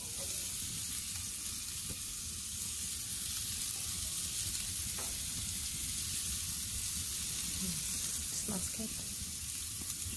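Thick beef steaks sizzling on the hot grates of a gas grill: a steady hiss with a low rumble underneath and a couple of faint ticks.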